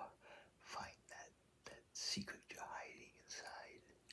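A man whispering, a run of hushed, breathy syllables with no clear voiced words.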